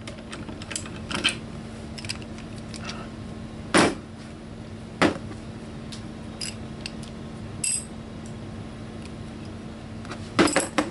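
Steel hand tools (a ratchet, socket and barrel nut wrench) being handled and set down on a hard bench: scattered light metal clicks, two louder knocks about four and five seconds in, and a ringing metallic clink near eight seconds, over a steady low hum.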